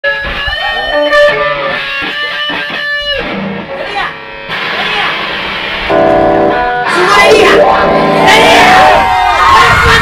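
A live band playing rock, with electric guitar and drums, held guitar notes at first and a fuller, louder sound from about seven seconds in. Crowd voices shout over the music near the end.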